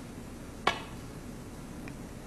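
Snooker cue tip striking the cue ball: one sharp click about two-thirds of a second in, then a faint tick near the end.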